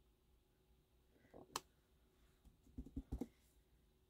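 Faint taps of a clear acrylic stamp block on paper over a table: one sharp click about a second and a half in, then a few soft knocks near three seconds, over near silence.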